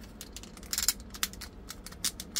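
Small clicks and scrapes of a swappable arm being worked into the shoulder socket of a 1/6-scale action figure, with a short cluster of clicks a little under a second in as it seats.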